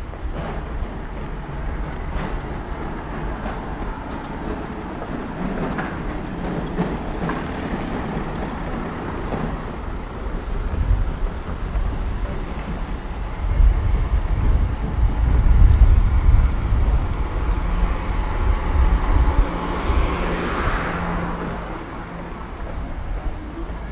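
Town-centre street ambience: a steady low traffic rumble that grows louder in the second half, with a vehicle passing close near the end.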